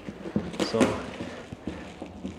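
Plastic wrapping rustling and crinkling as a cardboard shipping carton is cut open with a small blade, with a few light ticks and scrapes.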